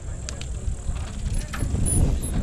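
Mountain bike rolling off on a dirt trail, heard from a helmet-mounted camera: a low rumble of tyres and wind on the microphone, with a few sharp clicks from the bike, getting louder toward the end.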